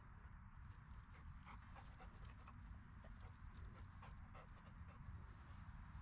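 Near silence: a faint low rumble with scattered faint clicks and rustles from a black Labrador retriever moving and sniffing over grass during a scent search.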